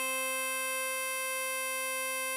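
Diatonic harmonica holding a single hole-4 blow note (C), steady and unbroken, with a reedy, buzzy tone.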